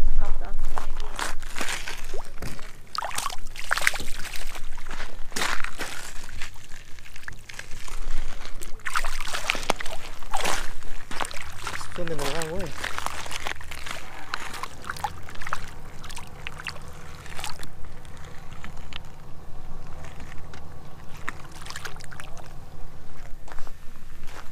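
Shallow lake water splashing and sloshing at the shoreline as a caught trout is released, in irregular bursts. A low steady hum comes in past the middle.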